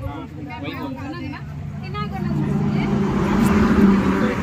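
People talking, then about halfway through a vehicle engine running close by, a steady low hum that grows louder.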